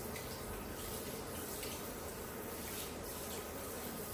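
Water running steadily from a shampoo basin's handheld sprayer into the sink while hair is rinsed, a continuous hiss.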